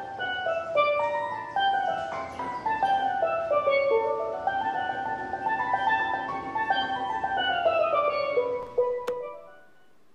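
Steelpan played with mallets: a quick melody of struck, ringing notes. The playing stops about nine seconds in with a click.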